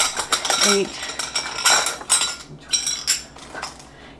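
Small glass jars of juice clinking and knocking against each other as they are picked up and set down, a run of sharp, irregular clinks with short bright rings.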